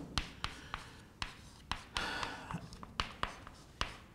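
Chalk writing on a chalkboard: a string of irregular sharp taps and short scratches as the chalk strikes and drags across the board.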